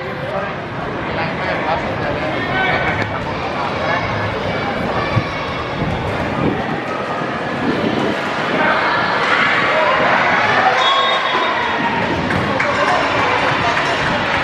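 Overlapping voices of spectators and players calling and chattering in a gym during a volleyball rally, louder from about eight seconds in. A single sharp knock about five seconds in.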